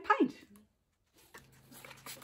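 A woman's voice drawing out one word with falling pitch, then, after a short silence, a steady low hum with faint, soft rustling and rubbing.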